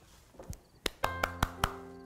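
A single person clapping, about six claps at roughly five a second. Soft background music with sustained notes comes in about a second in.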